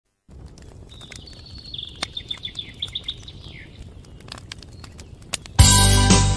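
A bird sings a run of quick repeated chirps over a low outdoor background hiss with scattered faint clicks. Loud music comes in near the end.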